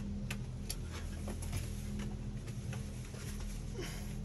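Scattered light clicks and taps, about a dozen at uneven intervals, over a steady low hum.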